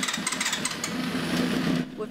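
A small race-car engine running in a shop, a fast rattling buzz that cuts off abruptly near the end.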